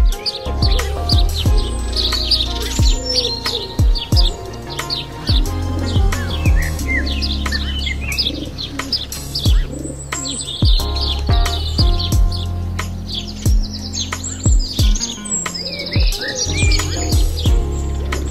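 Background music with held bass notes and a beat, with birds chirping repeatedly over it.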